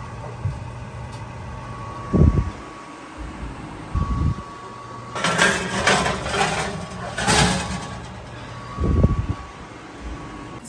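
Cooking dishes being handled in an open oven: three dull knocks and two short bursts of scraping against the metal rack, over a low steady hum.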